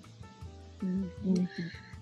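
A voice over background music with a steady low bass note.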